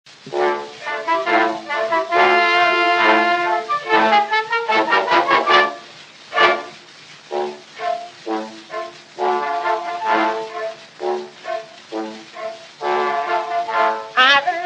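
Brass-led instrumental introduction from a 1910 Edison wax cylinder recording: sustained chords in the first few seconds, then short, detached chords repeated through the second half, with the narrow, dull tone of an early acoustic recording.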